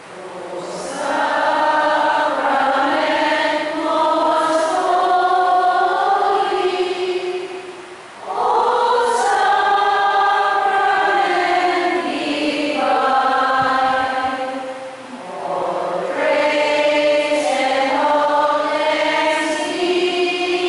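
A group of voices singing together in slow, drawn-out phrases of long held notes, with short breaks between phrases about eight seconds in and again about fifteen seconds in.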